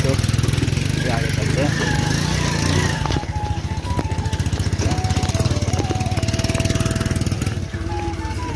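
Auto-rickshaw engine running with a steady low chugging as it moves over rough, stony ground, with background music playing over it.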